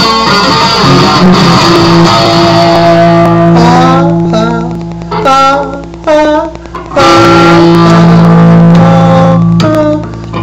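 Electric guitar played loud: held chords, then a run of single notes with string bends and vibrato in the middle, then another held chord that cuts off near the end.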